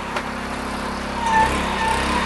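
Small engine of a ladder-mounted shingle hoist running, getting louder about a second and a half in as it lifts a bundle of shingles up the ladder, with a steady whine joining in.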